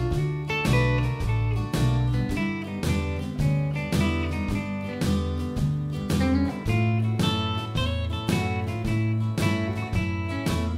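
Fender Telecaster electric guitar playing country-shuffle single-note lines built on a major sixth chord shape, over a backing track with a walking bass line and drums.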